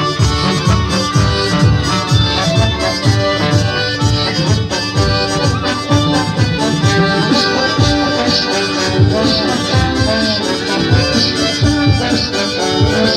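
Live band music: a reedy melody of held notes over a steady low beat.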